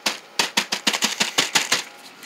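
A quick run of light taps on plastic sheeting, about six a second, starting about half a second in and stopping just before the end.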